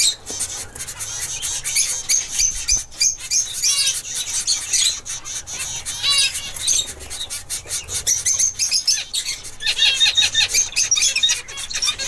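Zebra finches calling: a dense, continuous run of short, high-pitched chirps, with a few longer, stacked nasal calls about four and six seconds in.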